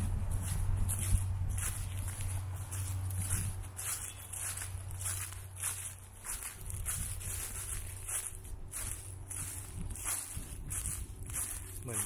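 Wind buffeting the microphone in a low rumble, strongest in the first few seconds, with a person's walking footsteps at about two a second.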